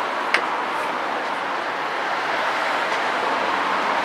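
Steady background street traffic noise, with a single sharp click about a third of a second in.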